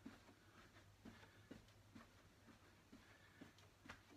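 Near silence with faint, soft thuds about twice a second: trainers landing on a carpeted floor during quick star jumps, over a low steady hum.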